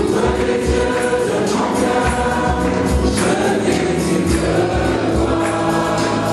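A gospel choir singing live over a steady, regular beat.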